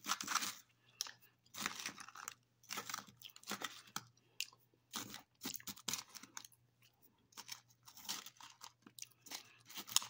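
Close-up chewing of frozen grapes coated in jello powder: irregular crunches every half second to a second as the icy grapes are bitten and chewed.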